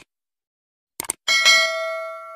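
Subscribe-button sound effects: a short click at the start and a quick double click about a second in, then a bright notification-bell ding with several ringing tones that slowly fades.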